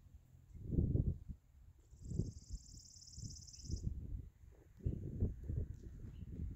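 Wind buffeting the microphone in uneven low gusts, strongest about a second in and again near the end. About two seconds in, a high, rapidly pulsing trill runs for about two seconds.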